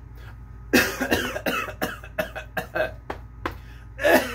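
A man's coughing fit: a quick run of short, loud coughs starting under a second in and going on to the end.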